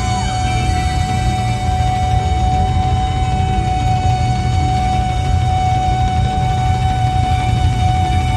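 Live concert music: a single note held dead steady through the whole stretch, over a heavy low rumble from the band and hall. Just before it, a few short sliding vocal notes end as the held note takes over.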